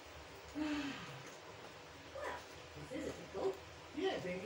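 Short wordless vocal sounds from a person: one falling "ooh"-like hum about half a second in, then a few brief broken sounds in the second half.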